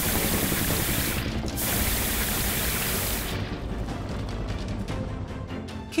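Hissing water-spray sound effect for a toy fire truck's hose jet, with a short break about a second in, stopping after about three seconds, over background music.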